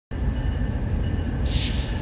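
A CSX diesel locomotive and freight train approaching, heard as a steady low rumble, with a brief high hiss about one and a half seconds in.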